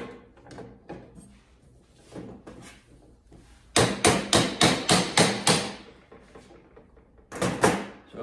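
Hammer tapping on the tubular metal frame of a tripod-stand chair: about seven sharp strikes in a quick run near the middle, then two more near the end.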